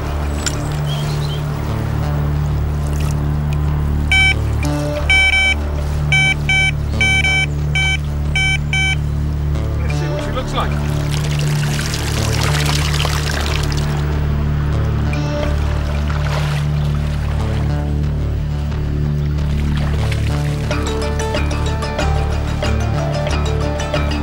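Background music runs throughout, with a run of short high beeps about four to nine seconds in. Around the middle, water pours and splashes off a carp landing net as it is lifted out of the lake.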